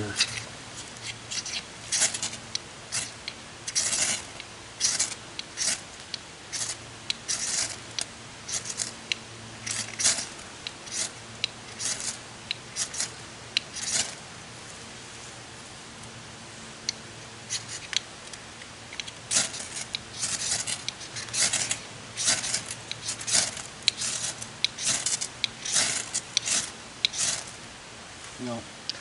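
A ferrocerium (ferro) rod struck again and again with a scraper, each stroke a short rasping scrape, in two runs of strokes with a pause of a few seconds in the middle. The sparks are not catching the wood shavings, which he thinks are too thick.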